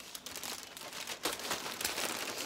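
Plastic packaging crinkling as it is handled, in quick, irregular crackles.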